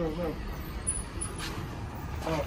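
A voice trailing off, then a steady low outdoor rumble like distant traffic.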